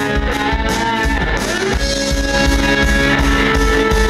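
Live band playing an instrumental passage: electric guitar out front over keyboards, bass and a steady low beat about twice a second, with a note bending in pitch about a second and a half in.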